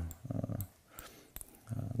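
A pause in a man's narration: a brief low hesitation sound from his voice, a faint click or two, then his voice starting up again near the end.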